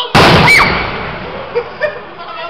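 An aerial firework shell bursting with one loud bang just after the start, its report fading away over the next second.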